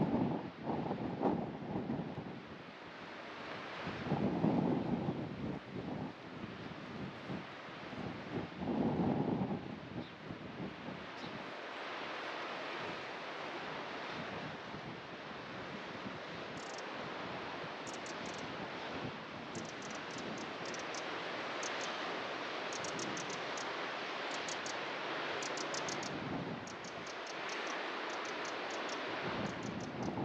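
Wind gusting against the microphone in three low buffeting swells over the first ten seconds, then a steady rush of wind and sea surf. From about halfway, faint quick high ticks come in short runs.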